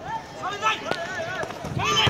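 Several voices shouting and calling out over each other during a football game. There is a sharp knock of the ball being kicked a little under a second in, and another loud hit near the end.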